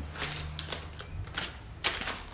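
A slip of paper being handled and taken from a hand: a few short, crisp rustles and ticks, the sharpest near the end, over a low steady room hum.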